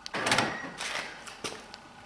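Soft rustling and scuffing handling sounds at a car's driver door, two short scrapes in the first second, then a light click about a second and a half in.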